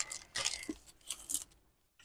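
Clear cellophane packaging crinkling and paper pieces rustling as a stack of die-cut paper is slid out of its bag: a few soft rustles that fade out about a second and a half in.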